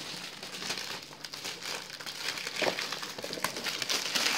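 Plastic shrink-wrap crinkling and crackling as it is pulled and handled around a brick of cardboard booster boxes, in an irregular run of crisp little crackles.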